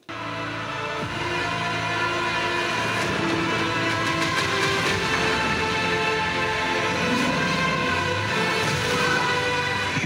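Cinematic film-trailer music: dense, sustained chords with deep horn-like tones that come in suddenly, swell over the first couple of seconds, then hold steady.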